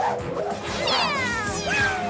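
Cartoon cat meow sound effect over background music: two falling meows, the first long and the second short near the end.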